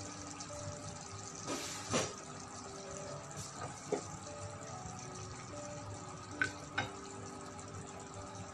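Pork chops and onions in black pepper sauce simmering in a frying pan, a steady bubbling hiss with a few light knocks, under faint background music.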